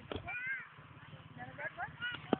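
Faint snatches of people's voices, short rising-and-falling calls with no clear words, and a single click just after the start.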